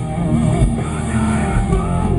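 Metalcore band playing live: distorted electric guitars, bass guitar and drum kit, with a held note that wavers in pitch.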